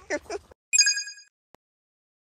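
A child's laughter cut off abruptly about half a second in, followed by a short bright bell-like chime of a few high ringing tones that fades out within about half a second, then a faint click.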